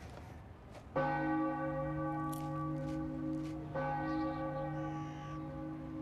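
Large church bell struck twice, about a second in and again almost three seconds later, each stroke ringing on with a long steady hum.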